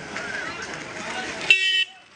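Busy street-market background with people's voices, then about one and a half seconds in a short, loud vehicle horn toot.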